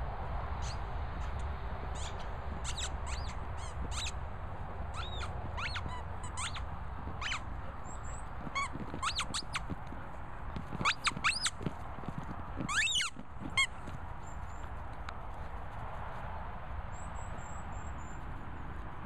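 Rubber squeaky crocodile toy squeaked repeatedly as a Border Collie bites and chews it: a long run of short squeaks that bend up and down in pitch. They are scattered at first and loudest in two quick clusters past the middle, then stop a few seconds before the end.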